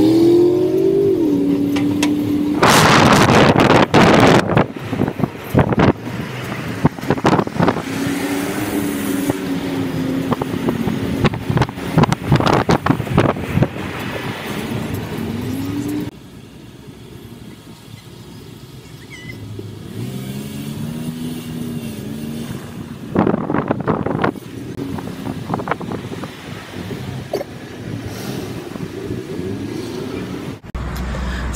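Car driving in city traffic: the engine note rises and levels off as it pulls away, then falls, several times over, under steady road noise. There are two louder rushes of noise, and the car goes quieter for a few seconds midway, as when it stops.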